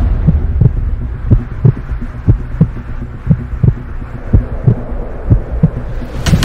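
Heartbeat sound effect: low paired thumps about once a second over a steady low drone, as a tense cinematic intro.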